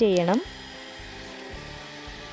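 Electric hand mixer running steadily on low speed, its beaters whisking eggs in a plastic bowl.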